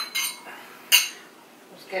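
Glass wine glasses clinking together in a toast: a few sharp, ringing clinks within the first second.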